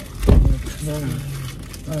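A car door shutting with one heavy, low thump, followed by a person's voice speaking briefly and indistinctly.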